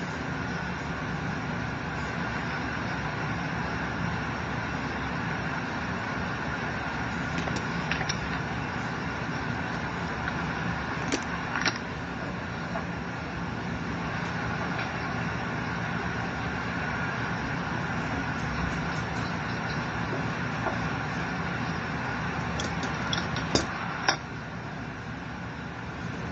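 Steady mechanical hum and hiss at an even level throughout, with a few light clicks about halfway through and twice near the end.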